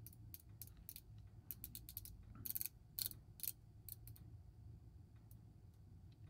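The unidirectional rotating dive bezel of a Seiko Tuna being turned by hand, giving a run of faint clicks at uneven spacing, mostly in the first four seconds.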